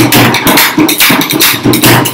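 Rajasthani dhol, a double-headed barrel drum, played with khartals (wooden hand clappers) in a fast rhythm of dense drum strokes.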